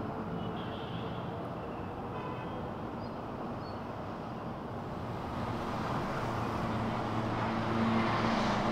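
Road traffic noise: a steady rumble of passing vehicles that grows louder over the second half.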